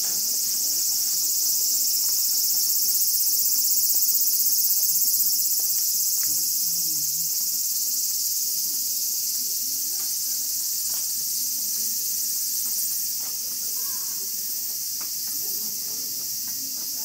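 Cicadas singing in a dense, steady, high-pitched chorus that carries unbroken through the whole stretch, with faint voices and small scattered sounds far beneath it.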